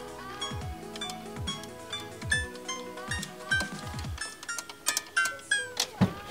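Toy electronic grand piano, the American Girl doll-sized one, played one note at a time: a string of short electronic piano tones at an uneven pace, not a tune.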